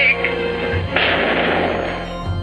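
Dramatic soundtrack from an old black-and-white film trailer: a music bed under a wavering high sound that fades out at the start, then, about a second in, a loud burst of noise that lasts most of a second and dies away.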